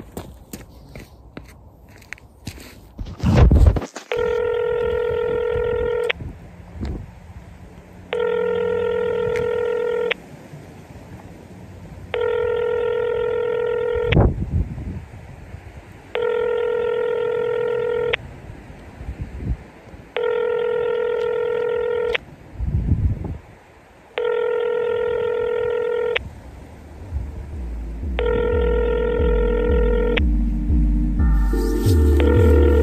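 Telephone ringback tone: a steady buzzing tone sounding for two seconds, then two seconds of silence, seven times over. Clicks and a loud low thump come before the first ring, low thuds fall in some of the gaps, and low bass music starts to build near the end.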